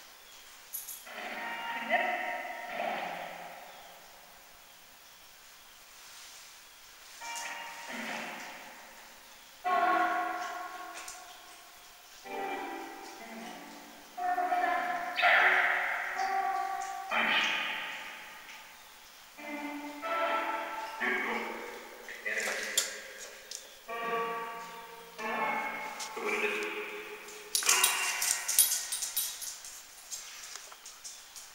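A Geobox spirit box running an app: a string of chopped-up voice and music fragments, each a second or two long with short gaps between them, and a burst of clicky crackle near the end.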